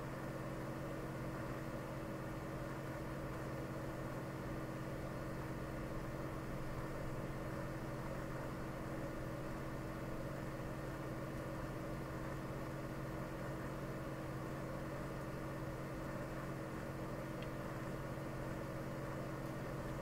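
A steady low hum with a few fixed pitches, unchanging throughout, and one faint click near the end.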